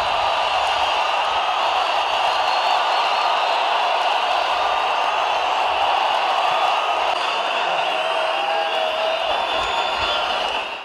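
Steady din of a huge stadium crowd, with thin high whistling tones over it.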